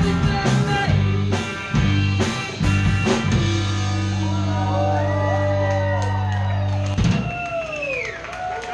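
Live band with drums, electric guitars and bass playing the end of a song. Drum hits run for about three seconds, then a final chord is held and rings while voices shout and whoop over it, and it cuts off sharply about seven seconds in.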